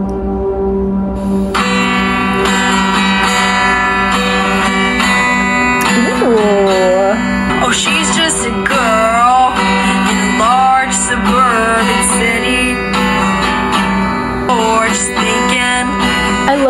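A pop song played aloud from an iPad speaker: a steady intro tone, then acoustic guitar coming in about a second and a half in, and a female voice starting to sing over it about six seconds in.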